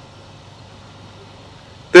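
Faint, steady outdoor background noise with a low hum during a pause in a man's speech, which starts again right at the end.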